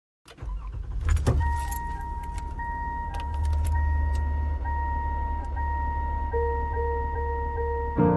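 Car sounds at the start of a recorded song: keys jangle and click about a second in, then a car engine idles low under a steady, evenly repeating warning chime. A low held note joins near the end.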